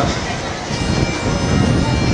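A pitch pipe sounding one steady held note, giving the starting pitch before the lead sings, over wind rumble on the microphone and outdoor crowd noise. The note starts about two-thirds of a second in.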